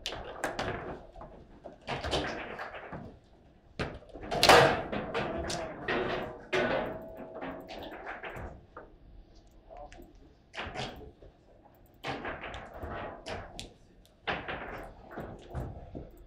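Table football play: sharp knocks and clacks of the hard ball against the figures, rods and table walls, with the loudest bang about four and a half seconds in. Fainter scattered clicks and knocks follow.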